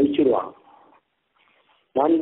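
A man's voice finishing a phrase with an upward glide in pitch, then about a second's pause before the voice starts again.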